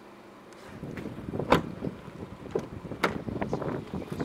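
Uneven rumbling and rustling from wind and handling on the microphone, with two sharp knocks, about a second and a half and three seconds in.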